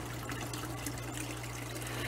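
Water trickling and splashing steadily into a paludarium from its pump-fed waterfall and hang-on filter, with a steady low hum underneath.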